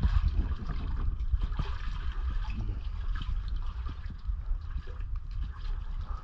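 Water sloshing and trickling close by, with many small irregular splashes over a steady low rumble.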